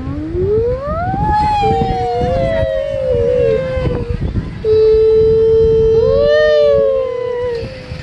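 A young child's long, drawn-out vocal sounds. The first rises sharply in pitch and then slowly falls over a few seconds, and the second is a long held note with a brief lift near its end. A low rumble from the moving ride runs underneath.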